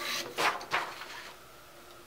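A sheet of scrap paper is slid out from under a harmonograph pen and off the paper stack, giving two brief swishes of paper within the first second.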